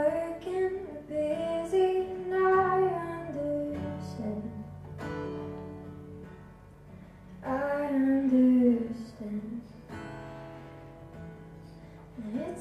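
A woman singing to her own acoustic guitar. She sings through roughly the first four seconds and again for a phrase about eight seconds in, with only the guitar heard in between and near the end.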